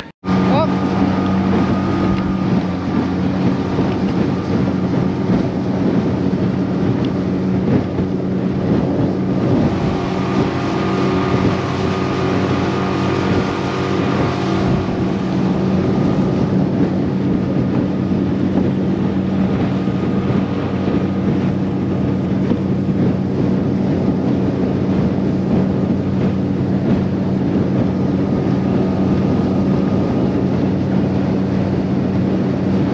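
Small boat's outboard motor running steadily at cruising speed, with wind buffeting the microphone.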